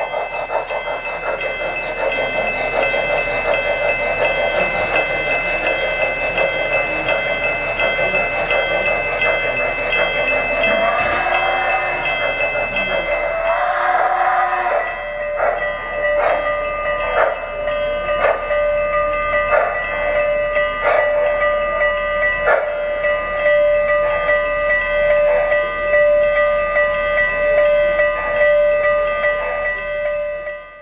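Model N&W J-class 4-8-4 steam locomotive's onboard sound system: rapid steam chuffing while it runs, two brief squealing glides as it slows, then from about halfway a bell ringing about once a second.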